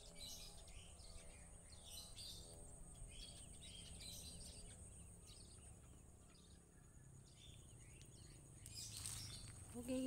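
Faint scattered bird chirps over a low steady background rumble and a thin, steady high-pitched hum.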